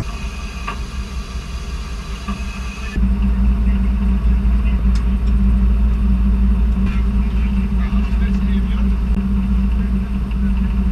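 Rescue boat's engines running with a steady low hum, getting abruptly louder about three seconds in.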